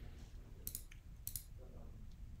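Two sharp computer clicks about half a second apart, each a quick press-and-release double tick, as the pointer selects tabs on a web page.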